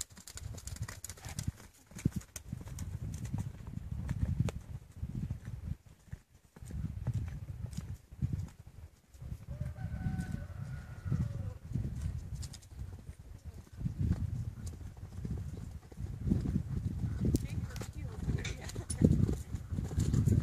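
Hoofbeats of a ridden Tennessee Walking Horse moving over a dirt arena, a run of repeated clip-clop footfalls.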